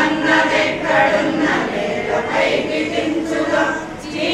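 A group of women singing together in unison into a microphone, unaccompanied.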